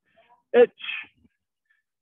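A man's voice sharply calls out a Japanese kata count, "ichi", once about half a second in.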